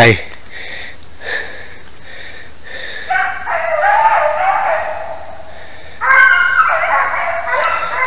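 Beagle hounds baying on the trail of a hare in two long, wavering calls, one starting about three seconds in and the other about six seconds in.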